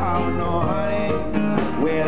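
Live reggae band playing a song at full volume: electric guitar and bass over a steady drum beat, with a held melodic line above.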